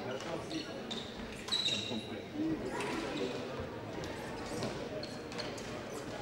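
Fencers' footwork on the piste during a foil bout: thuds of shoes on the strip and short squeaks of soles, one clear squeak about one and a half seconds in, over a murmur of voices in the hall.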